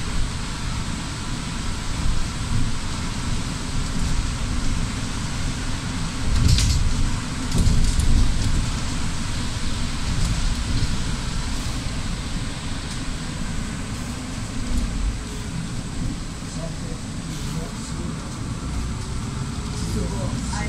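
Cabin noise inside a Solaris city bus driving on a rain-soaked road: a steady low rumble from the drive and tyres on the wet surface, with a couple of heavier jolts about six and eight seconds in.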